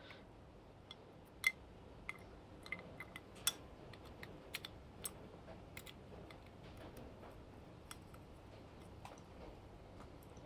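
Tweezers clicking against a glass beaker while lifting a small circuit board out of liquid. Faint, scattered light clicks, a few sharper ones among them.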